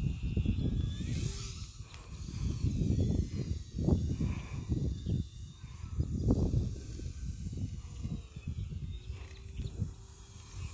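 Strong wind buffeting the microphone: a gusty low rumble that swells and fades every second or two.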